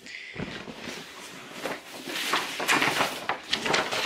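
A paper sleeve being ripped and pulled off a box: tearing and crinkling paper that gets busier in the second half.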